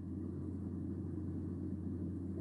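A steady low hum of background room noise, with no other event.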